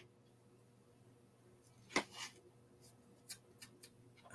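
Quiet handling of fly-tying materials and tools on a bench: one sharp click about two seconds in, then a few faint ticks.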